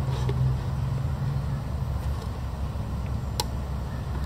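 Steady low rumble in the background, with one sharp click about three and a half seconds in.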